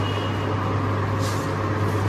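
Steady low hum with background noise, and a faint brief rustle of silk sarees being handled about a second in.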